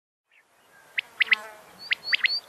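Small songbird chirping: three quick, sharp chirps about a second in and another near the end, over a faint hiss.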